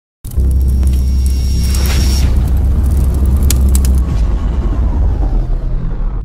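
Channel logo intro sting: electronic music with a heavy deep bass rumble, a whoosh-like swell about two seconds in, a cluster of sharp clicks past the middle, and a falling sweep near the end.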